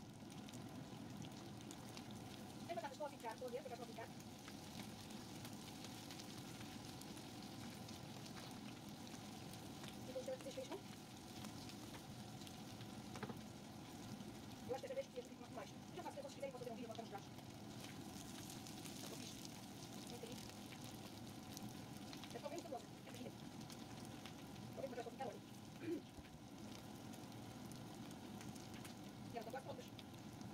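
Quiet, steady sizzling of diced potatoes frying in a pan for Bratkartoffeln, with a cream sauce simmering in a second pan.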